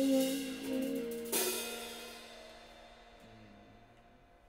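A small jazz group's final held chord, tenor saxophone over upright bass, ending about a second in with a drum-kit cymbal crash that rings on and fades away: the close of the tune.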